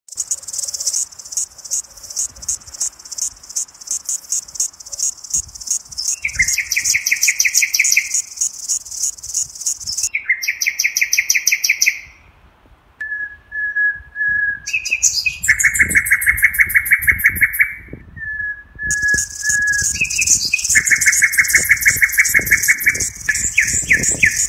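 Songbirds singing: a stream of rapid high chirps, with lower trilled phrases of a second or two joining from about six seconds in. The song stops briefly near the middle, then resumes.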